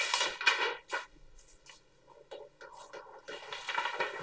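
Pen writing numbers on paper: a few short strokes in the first second, then fainter scattered scratches.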